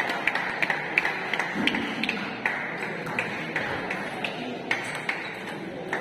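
Table tennis balls clicking on tables and bats in a busy hall: short, light ticks several times a second, thinning out after the first couple of seconds, with faint background voices.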